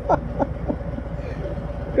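A man laughing in short, falling bursts for the first half-second or so, then stopping, over the steady low running of a Harley-Davidson touring motorcycle on the move, with a thin steady hum.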